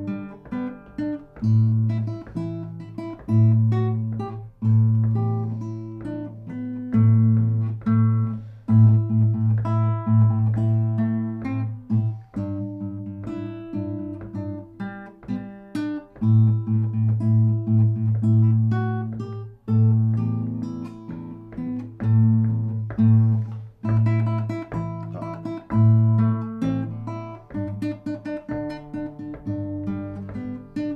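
Classical nylon-string guitar played solo: a plucked melody over a strong low bass note, in phrases of about four seconds with short breaks between them.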